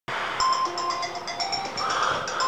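An alarm tone playing a short, tinkly melody of quick chiming notes that loops about every two seconds: a crappy alarm sound.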